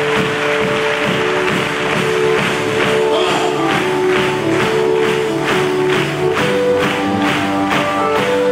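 Live worship band playing: held keyboard notes, with a steady percussion beat coming in about two seconds in.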